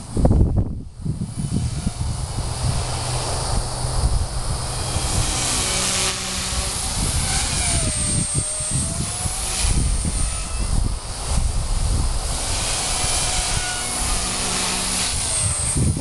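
Small electric RC helicopter in flight, its Turbo Ace 352 motor on an 18-tooth pinion whining, with the pitch rising and falling as the throttle changes. A low rumble on the microphone runs underneath.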